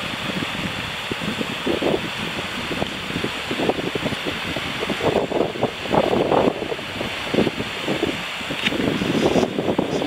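Wind blowing over the microphone: a steady rush with irregular gusty buffeting, heavier in the second half.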